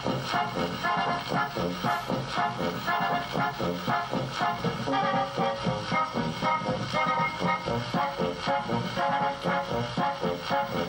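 Mattel Optigan optical organ playing a circus marching-band style accompaniment from its optical disc, with a melody played on its keys over a steady march beat. A brief laugh comes about halfway through.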